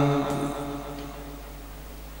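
The end of a man's long, held note of Quranic recitation through a microphone and loudspeakers. The note breaks off in the first half second and dies away in the hall. After that only a low, steady hum remains.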